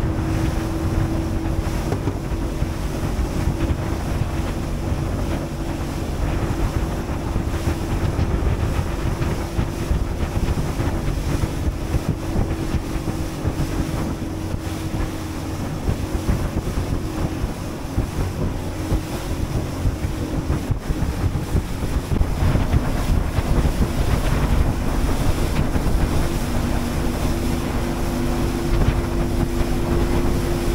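Small boat's engine running steadily, a constant hum with a second, lower note joining near the end, under heavy wind buffeting on the microphone and the wash of sea water.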